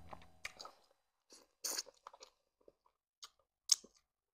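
Close-up mouth sounds of chewing a mouthful of catfish pepper soup and starch: a string of short, irregular wet smacks and clicks, the loudest about halfway through and again near the end. A low hum fades out in the first half second.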